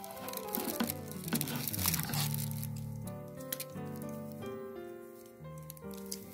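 Soft background music of slow held notes, with a few light clicks and rustles of paper and card being handled.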